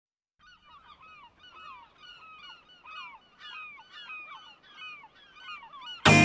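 A flock of birds calling: many short honking calls, each falling in pitch, overlapping at about two or three a second.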